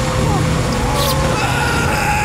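A pickup truck's engine running loud and steady as it speeds past, with a drawn-out high tyre squeal. Brief laughter at the start.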